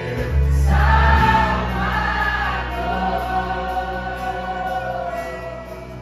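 Live gospel worship music: a vocal group singing long, held notes together over a band with bass and keyboard, getting quieter toward the end.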